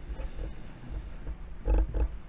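A pet nuzzling and rubbing against the camera: low, uneven rubbing and bumping on the microphone, with a louder burst near the end.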